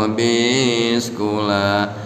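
A man's voice chanting Arabic religious text in a slow, melodic recitation, in two drawn-out phrases with long held notes that glide up and down.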